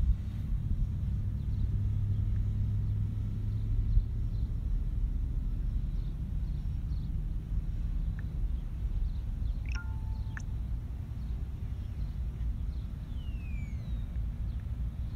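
Steady low outdoor rumble, with a few faint bird chirps about ten seconds in and a faint falling whistle near the end.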